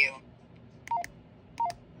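Baofeng UV-5R handheld radio beeping twice as its keypad buttons are pressed: two short two-note key beeps, each stepping down in pitch, with a sharp click near each, about a second in and again near the end.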